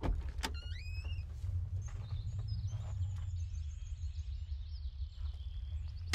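Low steady rumble inside a parked car, with clicks at the start and about half a second in, a short rising whistle just after, and faint high chirps through the middle.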